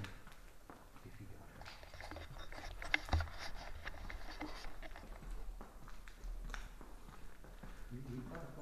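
Footsteps and scuffing as people walk down a hard corridor floor scattered with debris, with irregular small clicks and one louder knock about three seconds in.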